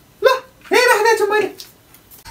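A person's voice: a short vocal sound, then a longer pitched, wavering one about three-quarters of a second in, like an exclamation or gasp rather than words.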